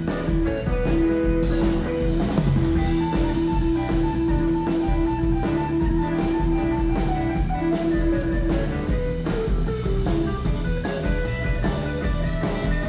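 Live band instrumental break: an electric guitar lead with long held notes over bass guitar and a steady drum-kit beat, with no vocals.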